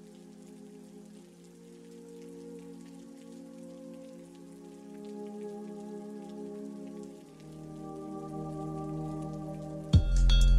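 Rain pattering, the ambient layer of a lofi track's intro, under soft held chords that change every few seconds and grow slowly louder toward the end.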